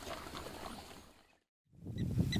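Faint field sound of a pack of African wild dogs at a kill, fading out to complete silence after about a second. A new outdoor recording fades back in just before the end.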